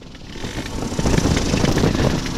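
Wind rushing and buffeting on the microphone of a flexwing microlight trike, its engine throttled back to idle in a gentle power-off stall; the rushing grows steadily louder over the two seconds.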